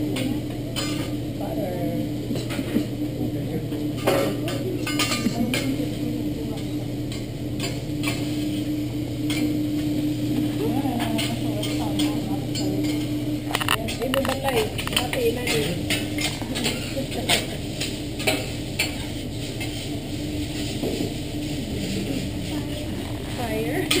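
Metal spatulas clattering and scraping on a hibachi griddle as a pile of noodles is stir-fried, with a light sizzle. A steady low hum underneath cuts out a little over halfway through.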